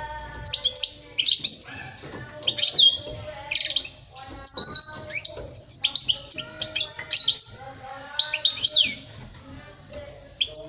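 European goldfinch singing: fast twittering phrases of quick, high, sliding notes, broken by short pauses.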